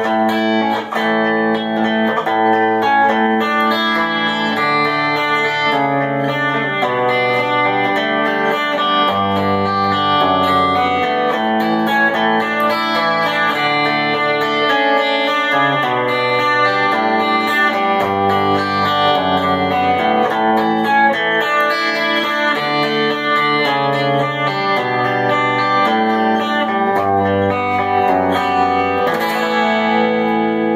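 Twelve-string electric guitar fingerpicked continuously in D, a chord pattern whose bass notes keep stepping down.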